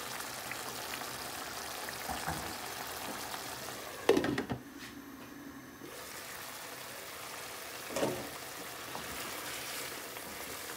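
Thick curry sauce bubbling and sizzling in an aluminium pan on a gas hob as it is stirred with a wooden spoon. There is a sharp knock about four seconds in and another about eight seconds in.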